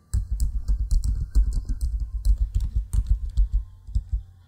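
Typing on a computer keyboard: a quick, uneven run of keystrokes entering a short terminal command.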